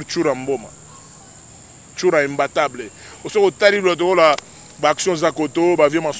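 A man talking in short bursts with pauses between them, over a steady high-pitched chirring of crickets.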